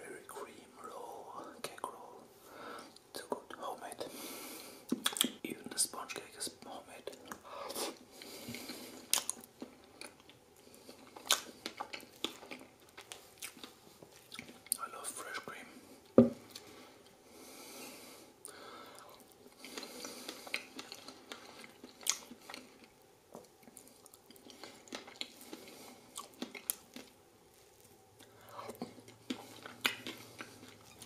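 Close-miked chewing and wet mouth sounds of a man eating soft strawberry cream cake roll, with many small clicks of lips and fork. The loudest is a single sharp clink about 16 seconds in, as the fork cuts down to the plate.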